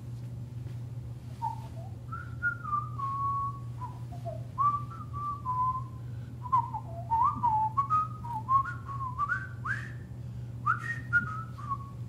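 A person whistling a tune: a string of short notes stepping up and down, with a few quick upward slides, starting about a second and a half in.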